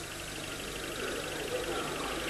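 Low, steady hiss and hum of an old analogue videotape recording, with no distinct event.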